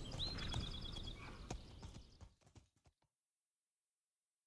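Horses' hooves clip-clopping as riders set off, fading away over about two and a half seconds into silence.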